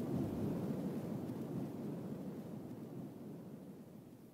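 The fading tail at the very end of a pop song: a quiet, low wash of sound with no clear notes that dies away steadily to silence.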